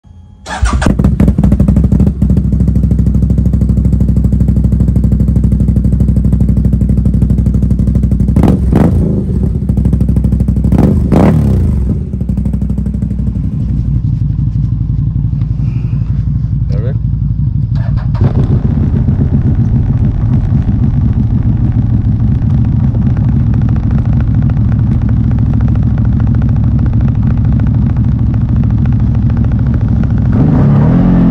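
CFMoto ATV's V-twin engine idling steadily close to the microphone, with two brief louder moments about eight and eleven seconds in.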